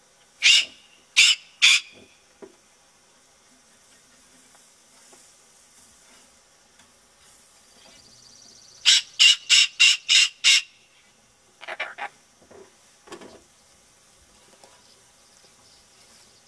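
Pet cockatoo squawking loudly and harshly: three squawks in quick succession, then after a pause a rapid run of six. A few quieter, lower sounds follow near the end.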